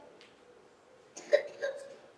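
Mostly quiet, then two short vocal sounds from a man a little over a second in, over a faint steady hum.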